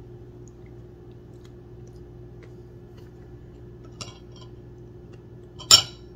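Faint clinks of a spoon and plate about four seconds in, over a steady low room hum, then a short loud wet sound near the end as a sugared tamarillo half is bitten into.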